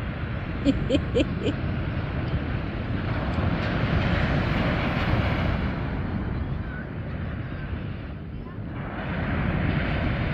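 Ocean surf breaking and washing up a sandy beach, a steady rushing that swells a few seconds in and eases briefly near the end. A person laughs a few short times about a second in.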